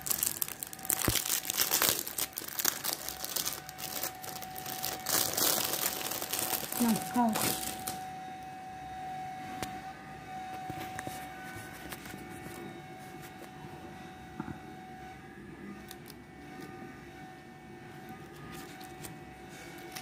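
Plastic wrapping on a gift box of dates crinkling and tearing as it is pulled off, dense and crackly for the first eight seconds or so. After that it turns to quieter, sparser handling of the opened box.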